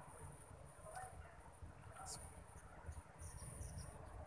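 Faint, thin, high-pitched insect trill that pulses on and off, over a low rumble.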